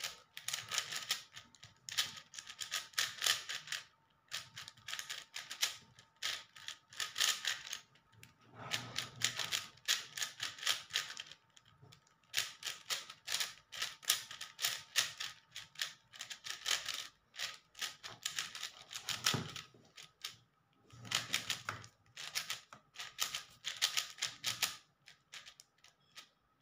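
Plastic 4x4 speed cube being solved by hand: its layers turned in quick runs of clicking and rattling, broken by short pauses every few seconds.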